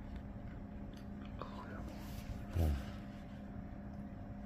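Quiet room with a steady low hum, a soft rustle of paper handled on the table around the middle, and a man's brief spoken "ne" (yes) about two and a half seconds in, the loudest sound.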